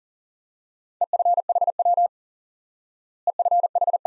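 Computer-generated Morse code at 40 words per minute, a single steady tone keyed in fast dots and dashes, sending the abbreviation EFHW (end-fed half-wave). It comes as two quick runs, about a second in and again past three seconds in.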